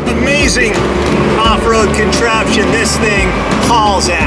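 A man talking inside a vehicle's cabin, with steady engine and road noise underneath.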